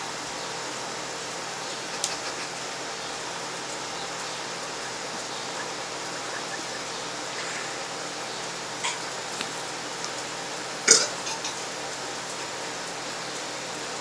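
A man gulping down raw eggs and mustard, with a short, loud burp about eleven seconds in and a few fainter throat sounds before it, over a steady outdoor hiss.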